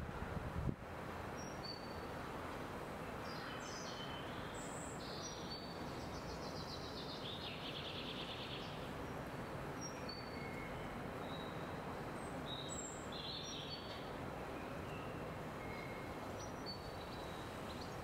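Songbirds chirping on and off, with a few rapid trills in the first half, over a steady faint background hiss of outdoor ambience.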